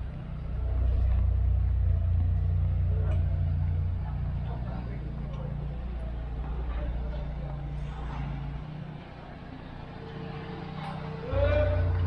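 Motor vehicle engine running close by in the street, a low steady rumble that fades about two-thirds of the way through and comes back briefly near the end, with faint voices of passers-by.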